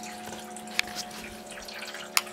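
Small electric bilge pump buzzing steadily as it circulates water through garden hose and a car radiator, with water trickling and dripping and a couple of sharp drips about a second in.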